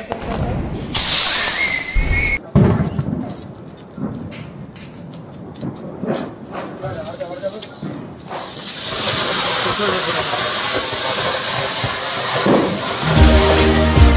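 A ground fountain firework spraying sparks with a steady, loud hiss, starting about eight seconds in. Near the start, a brief hiss and a short whistle as the firework lit in a glass bottle goes off. Music with a heavy beat comes in near the end.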